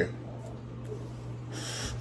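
A drag on a joint: quiet breathing through the lips, with a louder airy hiss near the end, over a steady low hum.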